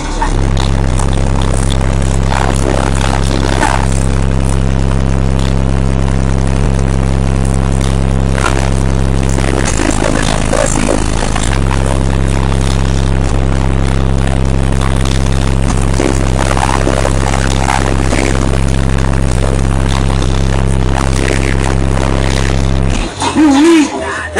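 Car audio subwoofers playing a loud, steady low bass tone, strong enough to blow back the hair of a person at the car's window. The tone wavers briefly about ten seconds in and cuts off suddenly about a second before the end.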